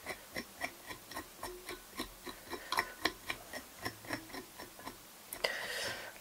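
Velcro dubbing brush raking through black seal-fur dubbing on a fly's body, a quick run of short scratching strokes, about four a second. Near the end a longer rustle.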